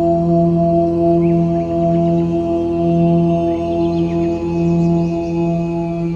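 Om meditation music: a low, sustained chanted "Om" drone held on steady pitches, with faint high chirps over it.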